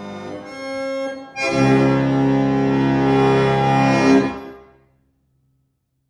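French harmonium, attributed to H. Christophe & Etienne, Paris, c.1868, its free reeds sounding a held chord. About a second and a half in, a louder, fuller chord enters, holds for some three seconds and dies away to silence.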